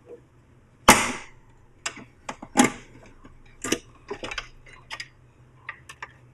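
Heavy metal test fixture being opened by hand: a loud clunk that rings briefly about a second in, then a run of smaller clicks and knocks as its top is swung up.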